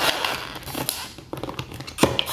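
An empty plastic bottle crinkling and crackling in quick, irregular clicks as a small dog bites and paws at it, with a short lull a little past a second in.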